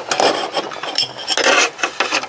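Small metal parts clinking and scraping together as a clamped aluminium holder on stainless cap screws is handled, with a couple of sharp clicks, one near the start and one about a second in.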